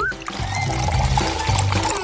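Milk pouring in a steady stream from a large carton onto a big plastic bowl of dry ring cereal, over background music.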